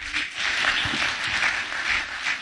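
Audience applauding, a dense, steady clapping that breaks out suddenly at the close of a speech.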